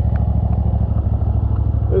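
Zero-turn riding mower's engine running steadily at a constant speed, with a fast, even pulsing and a strong low hum.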